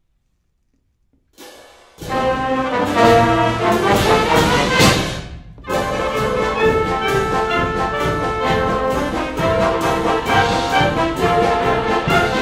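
College wind ensemble of brass, woodwinds and percussion beginning a piece: near silence, then the full band comes in loud about two seconds in, with brass to the fore. The band briefly cuts off about five and a half seconds in, then carries on.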